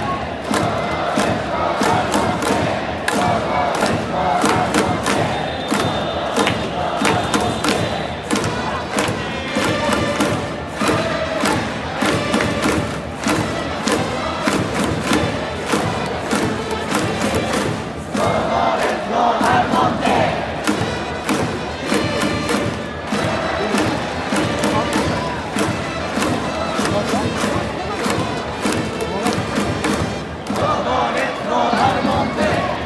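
Baseball stadium crowd's organized cheering: thousands of fans chanting together over music, with steady rhythmic clapping beating through it.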